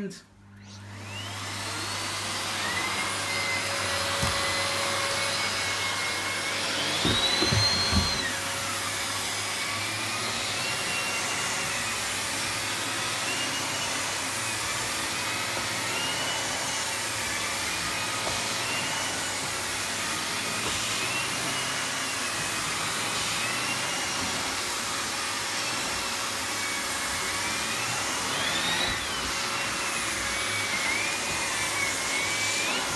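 Miele C3 Complete canister vacuum switched on, its motor rising to speed over about two seconds, then running steadily as the turbo brush is pushed over carpet. The whine wavers up and down with the strokes, with a louder rising surge about eight seconds in.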